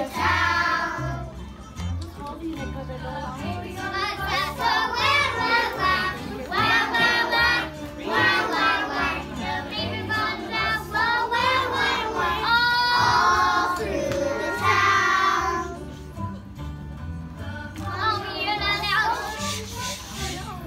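A group of young children singing together in unison, over accompanying music with a steady, repeating low beat. The singing comes in phrases with a short lull about three-quarters of the way through.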